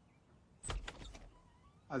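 A short clatter of rapid knocks at a closed bedroom door, a bit over half a second in and lasting about half a second.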